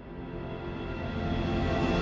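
Cinematic background music fading in, sustained chords that grow steadily louder.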